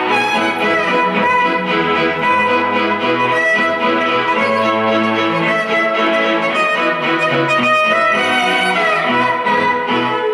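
Violin played with the bow, carrying a flowing melody, over an orchestral-style accompaniment with sustained low bass notes.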